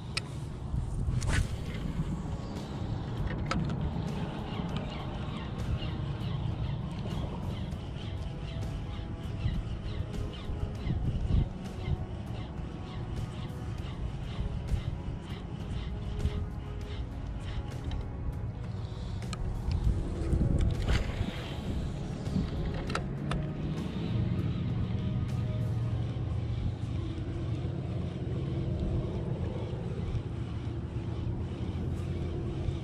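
Steady wind rumble on the microphone and water noise over shallow water, with scattered light clicks from a spinning reel being cranked as a lure is retrieved.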